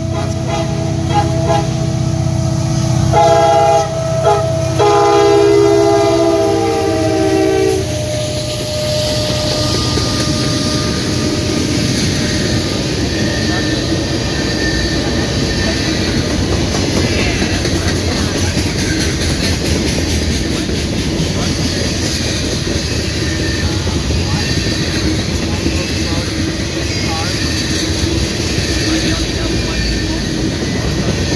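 CSX SD70MAC diesel locomotive sounding its horn in long blasts as it approaches, with a brief break about four and a half seconds in, the horn stopping about eight seconds in as the locomotive passes. Then the manifest's freight cars roll by with steady wheel-on-rail noise and clickety-clack over the joints.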